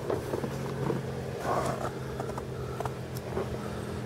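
A car engine idling steadily: an even low hum, with a short rustle about a second and a half in.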